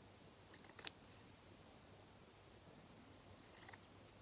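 Scissors snipping through cotton fabric: two short crisp cuts, one about a second in and another near the end.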